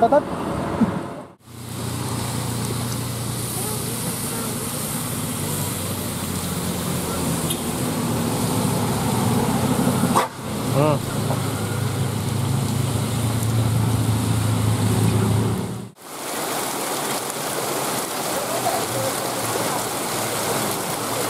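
Large bus engines running as buses pass on a hill road, a steady low drone with road noise. Near the end, after a cut, heavy rain pours down with water running off a roof.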